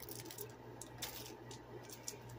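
Faint handling noise: a few light clicks and crinkles from a shrink-wrapped 4K Blu-ray case being handled, over a steady low hum.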